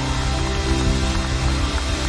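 Congregation applauding, a dense even clatter of many hands, over background music of steady held chords.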